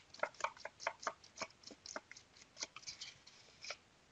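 Metal spoon scraping and tapping against a bowl as wet plaster is scooped out, a run of short, irregular clicks and scrapes that stops near the end.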